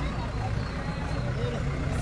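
Low, steady rumble of an idling vehicle engine, with faint voices of people talking in the background.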